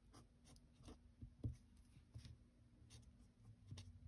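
A marker tip writing on a cardstock gift tag: faint, short scratchy strokes at an irregular pace as the words are lettered.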